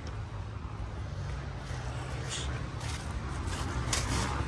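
Footsteps rustling through dry leaf litter, over a faint steady low drone of distant dirt bike engines.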